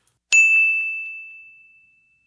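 A single bright ding, a chime sound effect struck once about a third of a second in and ringing out over the next second and a half.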